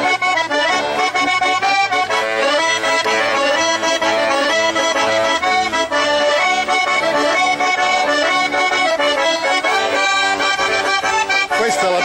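Two small diatonic button accordions (organetti) playing a tune together, melody over sustained chords without a break.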